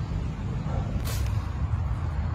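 An engine running steadily with a low rumble, and a brief hiss about a second in.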